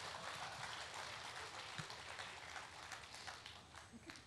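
Audience applauding: a dense patter of many hands clapping that thins and fades toward the end.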